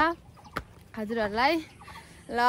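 A young woman laughing: one short drawn-out vocal sound that rises and then falls in pitch, about a second in, with a single sharp click just before it.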